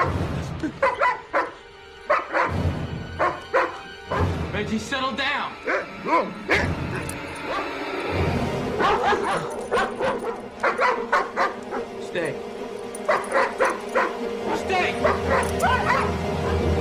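A large dog barking repeatedly in quick runs of barks, over sustained background music.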